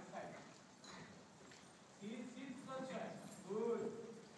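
Hoofbeats of a ridden horse on the soft sand-and-dirt footing of a covered riding arena. A person's voice calls out in the second half.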